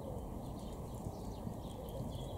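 Small songbirds chirping: many short, high, quickly falling notes in a busy scatter, over a steady low rushing noise.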